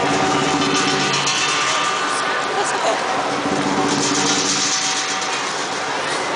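Lion dance percussion, drum with crashing cymbals and gong, playing without a break under the lions' routine, mixed with crowd chatter.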